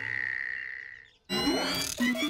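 Cartoon sound effects: a steady high tone that fades away over about a second, a brief moment of silence, then a burst of warbling, sliding tones.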